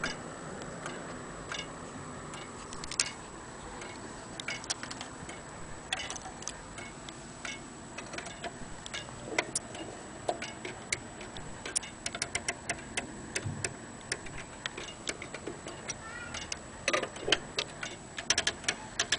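Antique Vienna wall clock movement ticking, with runs of rapid ratchet clicks about twelve seconds in and near the end as its winding arbors are turned.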